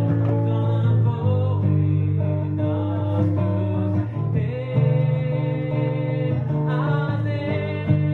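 A man singing a song to his own acoustic guitar, played live, the melody held in long sliding notes over steady low guitar notes.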